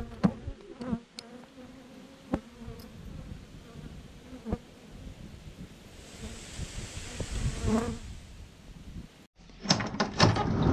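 Honeybees buzzing around a hive entrance, with now and then a single bee droning close past, and a few light ticks. The sound cuts off suddenly near the end and a brief clatter follows.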